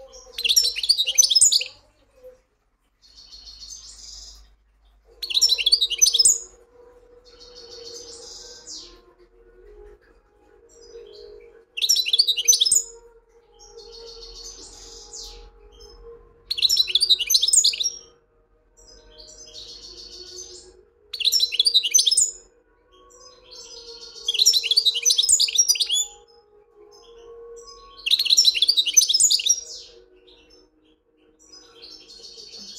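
European goldfinch singing: seven loud phrases of rapid, high twittering, each about two seconds long, with softer, shorter phrases between them. A faint steady hum runs under the song from about five seconds in.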